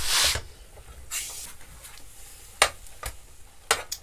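Brief rustling, once at the start and again about a second in, then a few sharp clicks and knocks as items are handled at a kitchen counter.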